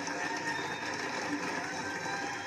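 Audience applauding steadily, a dense spatter of clapping with faint tones underneath.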